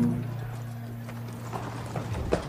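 A low held note of background music sustains after a hummed melody ends, with a few soft horse hoofbeats near the end.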